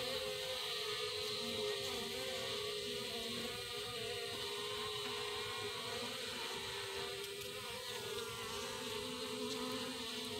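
Honeybee colony humming inside the hive: a steady, even buzz with a few held pitches that waver slightly.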